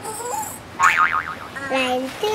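Cartoon sound effects: a short squeaky character vocalisation, then a fast-wobbling 'boing' spring effect about a second in, and short held tones near the end.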